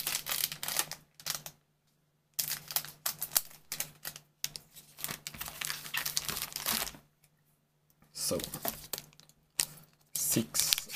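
Trading cards being handled and a foil booster-pack wrapper crinkling, in several bursts of clicking, crinkly rustle broken by short pauses.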